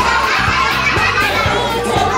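A crowd of young children shouting together, many voices at once, over background music.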